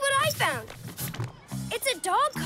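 Cartoon soundtrack: a high-pitched child character's voice making short wordless sounds that swoop up and down in pitch, over light background music.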